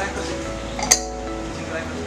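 A single sharp glass clink about a second in, from a glass jar of coffee beans being handled, over steady background music.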